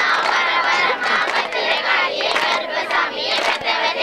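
A group of children and adults chanting a Tamil folk-game rhyme together, loud and continuous, many voices at once.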